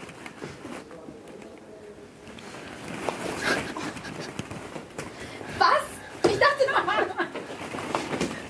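Quiet low voices with a few short light knocks for the first few seconds, then laughter and excited talk from several people in the second half.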